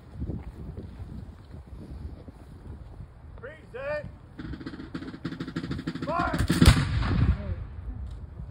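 A line of Continental Army reenactors' flintlock muskets fires a ceremonial volley. The main crack is the loudest sound, about two-thirds of the way in, with a few ragged shots just after it. Short shouted commands come before the shots.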